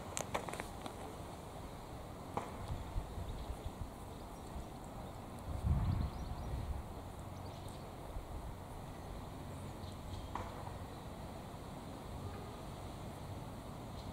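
Wind buffeting the microphone in a low, uneven rumble, swelling in a gust about six seconds in. A few soft scuffs of shoes on dry, crumbly garden soil.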